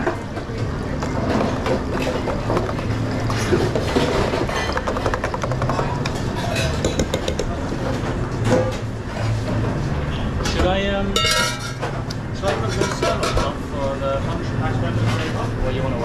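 Busy restaurant kitchen ambience: indistinct chatter from the cooks over a steady low hum, with light clinks of metal spoons against steel gastronorm pans. A short rattling burst comes about eleven seconds in.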